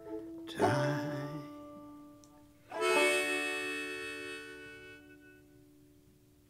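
Closing bars of a clawhammer arrangement on a Whyte Laydie open-back banjo with harmonica. A chord sounds about half a second in. A final chord at about three seconds rings with held notes and fades away toward the end.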